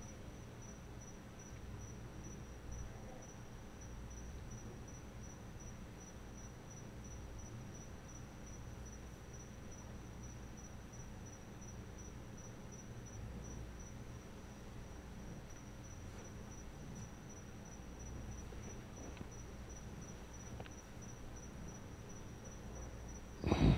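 A faint, steady, high-pitched pulsing trill, as of an insect, running on unchanged over a low room rumble.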